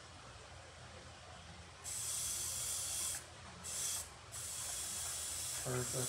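Airbrush (Iwata HP-BC Plus) spraying black paint onto a clear RC car body, in three bursts of hiss: a longer one about two seconds in, a short one in the middle, and a longer one from about four seconds on.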